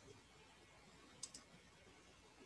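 Near silence with room hiss, broken a little past halfway by two quick, faint clicks of a computer mouse.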